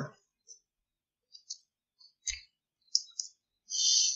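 A few faint, short clicks spaced through a pause in an otherwise silent, gated microphone feed, one about two seconds in carrying a slight low knock, followed by a brief faint hiss near the end.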